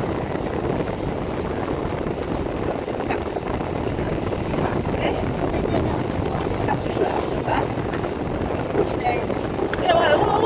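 Steady engine and road noise heard from inside a moving car's cabin.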